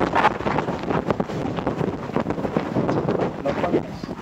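Rustling and scraping on a clip-on microphone as it is handled, a dense, irregular crackling noise.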